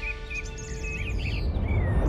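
Birds chirping in a string of short calls, some gliding up and down in pitch, over soft background music.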